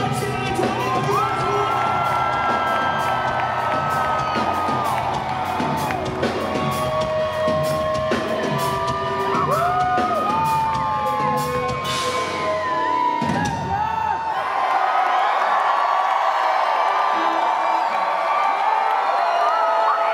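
A rock band playing live, with electric guitar and steady drum hits, until the music stops about two-thirds of the way through. The audience then cheers and whoops.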